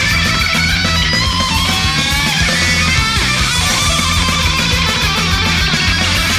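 Thrash metal song: fast drums and bass under loud electric guitars, with a lead guitar line bending up and down in pitch in the first few seconds.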